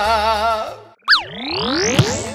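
The last held, wavering sung note of a festive Latin-style song over a bass line, fading out within the first second. After a brief gap comes a short zap with fast pitch glides, then a rising whoosh sweep, an electronic sound-effect sting.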